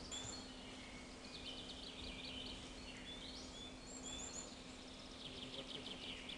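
Faint songbirds calling in a forest: scattered short, high chirps and whistles over a quiet background, with a steady low hum underneath.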